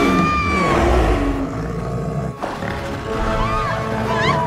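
A bear's roar, a sound effect that rumbles deep through the first two seconds or so, over dramatic music; near the end come women's frightened screams.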